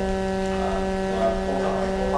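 Steady electrical hum from the sound system, one low tone with several evenly spaced overtones, under faint, distant off-microphone speech.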